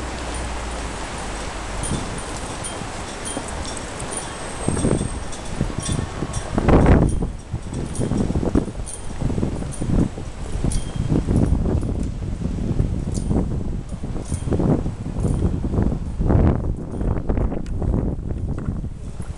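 A steady background hiss, then from about five seconds in, dull low thumps at walking pace: the footsteps of someone walking with the camera.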